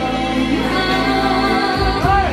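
Live band music: a saxophone plays a slow melody of long, held notes over electronic keyboard accompaniment.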